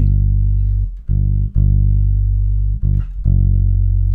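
Electric bass guitar played fingerstyle, unaccompanied: about five low notes, each plucked and left ringing into the next, part of the chorus line of a song in the key of G.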